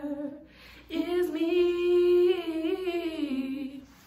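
A woman singing a wordless melody a cappella. There is a quick breath about half a second in, then one long held note that steps down in pitch near the end.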